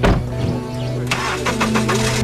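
A sharp knock, then a car engine cranking and starting, under steady background music.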